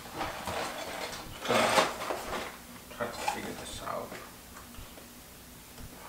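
Cardboard LEGO set box being handled and picked at by hand: irregular scraping, rustling and tapping, loudest about one and a half seconds in, with a few sharp clicks after.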